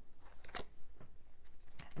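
Tarot cards being handled: a couple of short papery rustles and small clicks as a card is picked up and moved between the hands.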